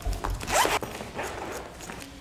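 Fabric being cut or ripped open: a quick rasping tear about half a second in, then fading.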